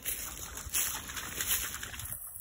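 A dog wading out of the shallow lake edge through reeds and dry brush: an irregular splashing and rustling.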